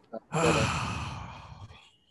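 A person's long, breathy sigh, loudest at the start and trailing off over about a second and a half.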